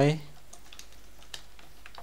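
A few faint, scattered keystrokes on a computer keyboard as a short web address is typed.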